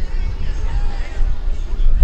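People talking faintly in the background under a loud, uneven low rumble.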